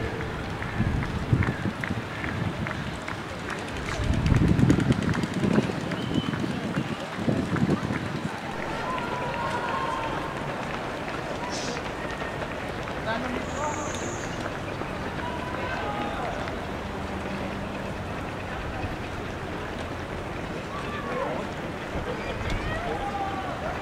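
Footsteps of a large field of marathon runners on the road, mixed with scattered voices of runners and spectators, as steady street noise. Low gusts of wind hit the microphone a few seconds in.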